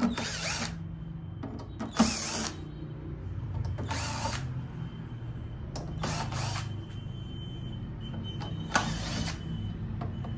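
Cordless drill/driver running in about five short bursts, roughly two seconds apart, backing out the top-cover screws of a power amplifier to open it up.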